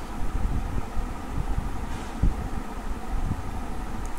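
Steady low rumble of background noise picked up by the microphone, with one soft thump a little over two seconds in.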